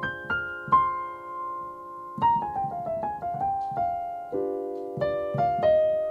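Piano playing jazz chords in a minor key, opening on a sustained D half-diminished (D min7b5) chord with single notes struck above it. About two seconds in, a new chord comes with a quick line of notes running downward, another chord follows about four seconds in, and a few more notes are struck near the end.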